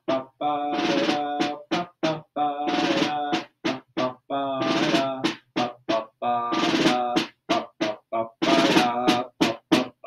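Orchestral snare drum with thin heads and snares on, damped with a chamois cloth and played quietly with small-bead sticks: short rolls of about a second alternate with single strokes, separated by brief pauses.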